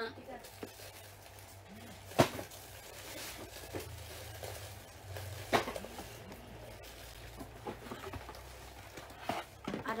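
Handling of a black leather handbag: faint rustling with two sharp clicks, about two seconds in and again at five and a half seconds, and a few smaller ticks.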